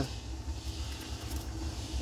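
A low, steady rumble of a motor vehicle's engine running.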